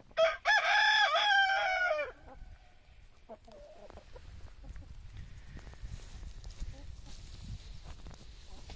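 Marans rooster crowing once, a loud crow of about two seconds with a short break near its start. A few soft clucks follow about three seconds in.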